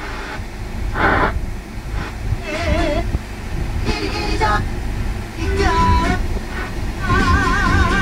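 Hyundai Starex's factory car radio being tuned through FM stations: short snatches of broadcast speech and music follow one another every second or so as the frequency changes, ending on a station with a held sung note with vibrato.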